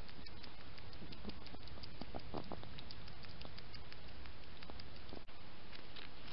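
Scattered small ticks and rustles of a hedgehog moving in dry leaf litter, over the steady hiss of a night wildlife camera's microphone. The sound drops out for an instant about five seconds in.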